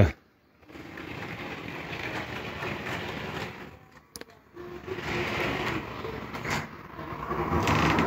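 H0-scale model diesel locomotive (a Mehano BR 218) running along the layout track with its double-deck coaches: the steady whirr of a small electric motor and gearing, with the rattle of wheels on the rails. It dips briefly about halfway through, then picks up again and grows louder toward the end.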